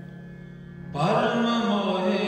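Harmoniums holding a steady chord for about a second, then male voices entering louder with the harmoniums in Sikh Gurbani kirtan singing.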